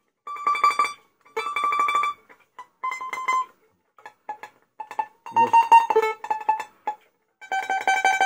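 Four-string domra played in tremolo, each note a fast run of repeated plucks: a few short notes stepping down in pitch, then a longer held note near the end.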